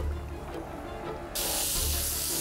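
Background music with a steady beat; about a second and a half in, a loud sizzle of an egg frying in hot oil in a pan starts suddenly and keeps going.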